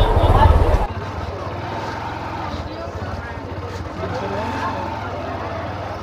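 Busy market street heard from a slow-moving scooter: crowd voices and the scooter's low engine hum. Wind buffets the microphone for the first second, then cuts out suddenly.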